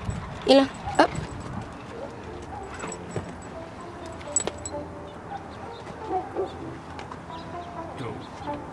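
A corgi gives two short yips about half a second apart, then a few faint sharp clicks.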